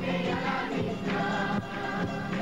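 A large group singing a folk song in chorus, accompanied by strummed acoustic guitars, in a steady rhythm.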